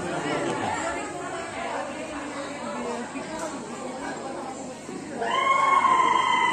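Murmur of an audience chattering in a hall, then about five seconds in a high voice starts a long held sung note that slowly falls, opening a Jeng Bihu song.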